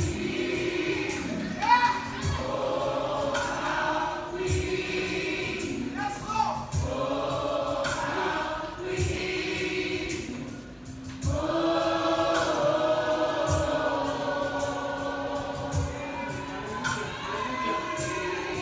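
Recorded gospel song: a choir sings over a slow low beat that falls about every two seconds. The music thins out briefly a little past halfway, then the choir comes back fuller.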